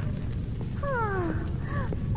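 Animal-like cries, two or three short calls that each slide downward in pitch, over a low steady rumble in the film soundtrack.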